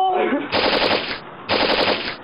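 Machine-gun fire sound effect: two bursts of rapid shots, each just under a second long, with a short gap between them.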